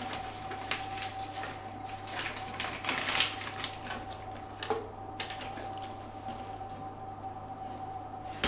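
Makeup bag being rummaged through: scattered small clicks, taps and rustles of cosmetic cases and packaging being handled, over a faint steady hum.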